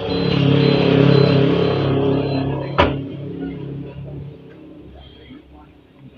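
The horn of a Suzuki Esteem sounding in one long steady blast that dies away about two and a half seconds in, loud, showing the horn still works. A sharp knock follows near three seconds in.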